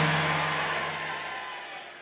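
A held low keyboard chord fading steadily away, with a faint wash of church hall ambience under it.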